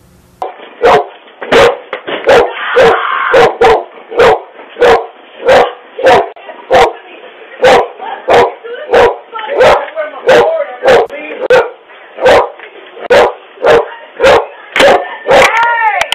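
A dog barking over and over at a steady pace, about one and a half loud barks a second, picked up by a doorbell camera's microphone.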